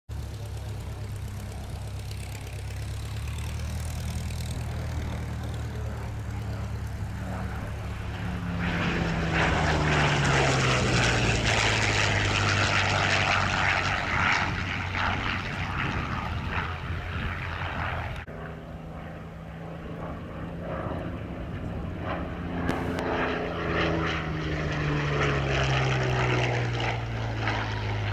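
Curtiss P-40 fighter's V12 piston engine and propeller on low display passes, the engine note swelling to its loudest as the aircraft goes by and dropping in pitch as it passes. After an edit, a second pass with the same falling note.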